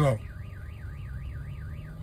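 A warbling electronic alarm tone whose pitch sweeps steadily up and down about four times a second, fainter than the voice, heard from inside a car.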